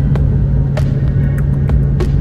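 Steady low drone of an airliner's turbofan engines in cruise, heard inside the cabin by the window: an even rumble with a constant low hum, crossed by a few short sharp clicks.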